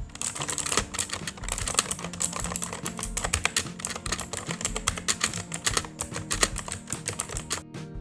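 Fast typing on a Redgear MK881 Invador mechanical keyboard with Kailh blue clicky switches: a continuous run of sharp, typewriter-like clicks from the keys.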